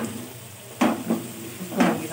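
Wooden spatula stirring and scraping a masala of onions, tomatoes and green chillies frying in oil in an aluminium pot, with a light sizzle throughout. Two sharper scrapes against the pot come about a second apart.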